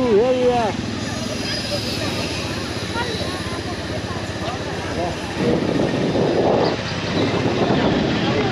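Motorcycle ridden slowly in street traffic, its engine running with steady road and wind noise on the rider's helmet camera; a rougher rushing noise swells over the last few seconds.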